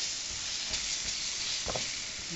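Grated cabbage sizzling steadily in hot oil in a stainless steel frying pan as it is stirred with a wooden spoon, with a couple of short knocks about a second apart, while it fries toward golden brown.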